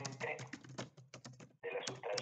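Rapid key clicks of typing on a computer keyboard, about a dozen strokes in quick irregular succession, with a voice heard briefly at the start and again near the end.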